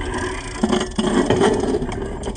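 A small 12-inch BMX bike rolling over skatepark concrete, its tyres rumbling and scraping, with a few knocks from the bike along the way.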